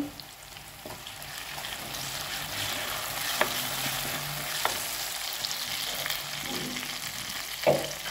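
Whole shallots and curry leaves sizzling in hot oil in a clay pot. The sizzle builds over the first few seconds as the pot is stirred with a wooden spoon, which gives a few light clicks against the pot.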